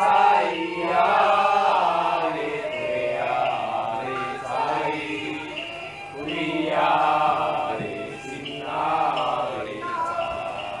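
Voices chanting in long, sung phrases that swell and fall back every second or two, with music underneath.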